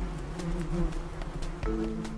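An insect buzzing, its drone wavering up and down in pitch.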